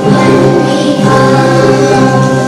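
Children's choir singing, holding long sustained notes.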